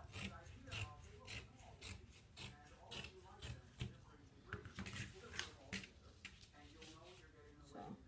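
Dressmaking shears snipping through folded layers of sheer tulle, a quick run of crisp cuts at about three a second.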